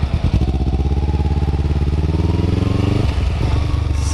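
Kawasaki Ninja 250 motorcycle engine accelerating under way, its pitch climbing steadily for about three seconds, then dropping abruptly and settling lower. Wind noise is mixed in.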